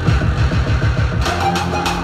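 Electronic dance music played live on a grid pad controller: rapid stuttering bass hits, switching about halfway through to sustained bass with sharp high percussive hits.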